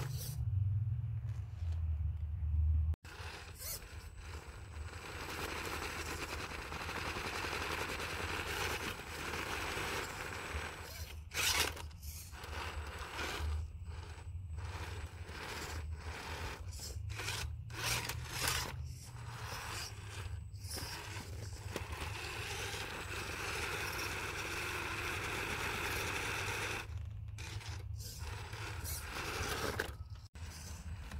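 Axial Capra 1.9 RC crawler's brushed-motor drivetrain running in bursts as it tries to climb a steep sandstone rock step on its stock Nitto tyres, with the tyres and chassis scraping on the rock. The throttle cuts off and comes back many times, leaving short gaps.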